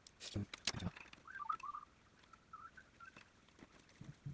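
A few clicks and knocks of plastic parts being handled on an RC truck, then faint chirping twice.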